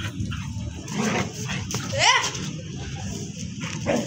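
Dogs vocalizing in rough play, with short whines and yips and one loud rising-then-falling whine about two seconds in, over a steady low rumble.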